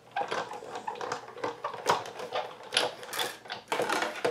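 Sizzix Big Shot manual die-cutting machine being hand-cranked, rolling a cutting sandwich with a crosshatch oval die through its rollers, with a run of irregular clicks and rattles.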